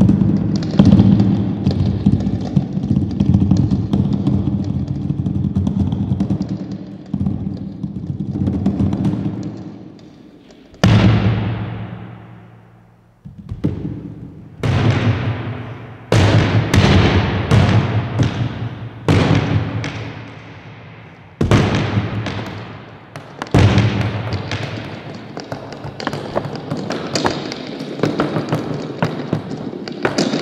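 Amplified sound sculptures, black plastic-skinned 'organ' objects fitted with contact pickups and played through small amplifiers. A low, steady drone holds for about ten seconds and then fades. From then on the objects are struck by hand, giving about a dozen sharp slaps and knocks, each one ringing out and dying away.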